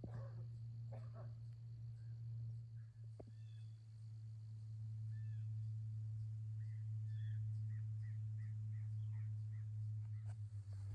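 Faint lakeside morning ambience with a steady low hum. In the second half, a small bird gives a run of short, high chirps, about three a second.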